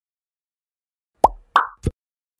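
Three quick cartoon-style pop sound effects a little past one second in. The first and last drop sharply in pitch like a bloop, and the middle one is a short hissy puff.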